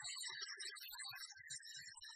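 Two heligonkas, Slovak diatonic button accordions, playing a folk tune together: a busy treble melody over short bass notes that come every few tenths of a second.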